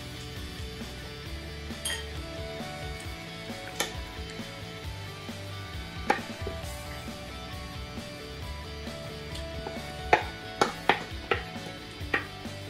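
Wooden spatula knocking and scraping against a plate and a frying pan as shredded courgette is pushed into the pan: a few separate sharp knocks, then a quick cluster of louder knocks near the end.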